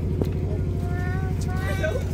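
Diesel generator engine of a mobile light tower running steadily with an even low pulsing drone, with one sharp tap a moment in.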